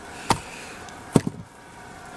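Two sharp knocks about a second apart, the second louder and followed by a fainter one.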